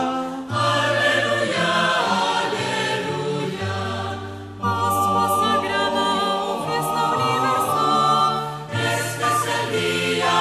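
Choir singing a Taizé chant in several-part harmony, long held notes, with short breaks between phrases.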